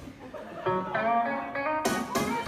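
Guitar music starting about half a second in: a run of plucked guitar notes with a sharp strum or hit near the end.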